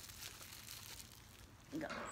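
Faint crinkling of a clear plastic bag handled in the hands, with a few light ticks.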